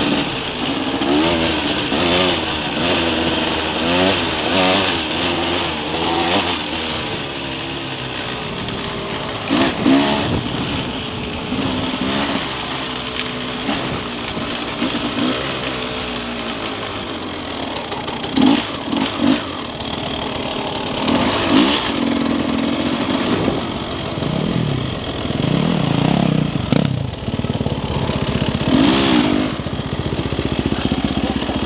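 Enduro dirt bike engine running on a trail ride, its revs rising and falling with the throttle for the first several seconds, then steadier as the bike slows down, with short throttle blips in the second half.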